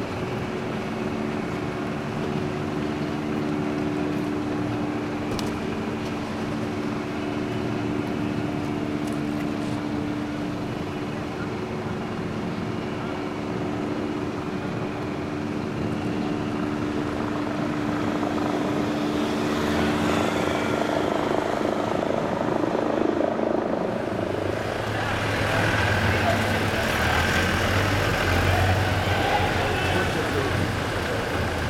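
Vehicle engine noise in city traffic: a steady engine drone through most of it, giving way to louder traffic noise as vans drive past in the last few seconds.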